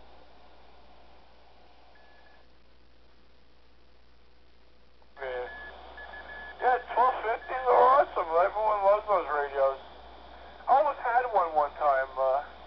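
Ham radio voice transmission received on an Alinco DJ-X10 scanner and heard through its small speaker. Faint hiss with a brief beep, then about five seconds in the signal opens with a short tone and a man talking.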